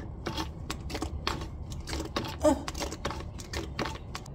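Hand fluid pump on a gear oil bottle being worked to fill a rear differential, giving a run of irregular clicks about two to three a second.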